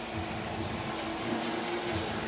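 Steady stadium ambience from a football broadcast: an even, constant wash of noise with a faint sustained hum and no distinct events.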